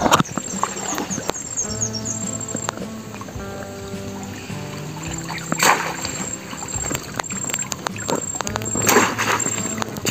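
Background music with steady notes, over water sloshing and splashing as a wire-mesh crab trap is hauled up out of river water. There is a loud splash about halfway through and another near the end.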